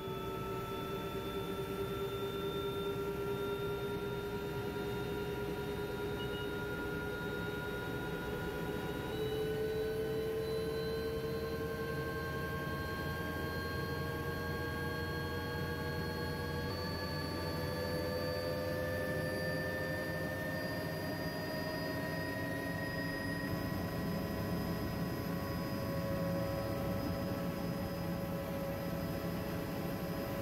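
Helicopter turbine and rotor heard from inside the cabin: a steady whine of several tones that climbs slowly in pitch as the engine spools up on the ground.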